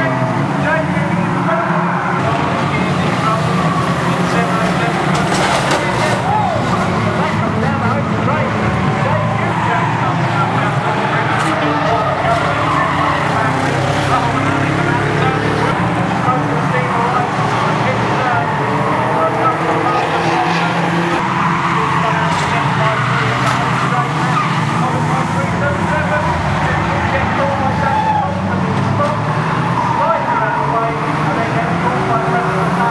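Several banger racing cars' engines running hard together on the track, with tyres skidding and a few sharp bangs as cars hit one another.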